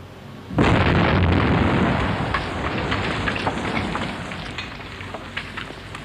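Open-pit mine rock blast going off about half a second in: a sudden loud explosion, then a rumble that slowly fades over several seconds with scattered crackles.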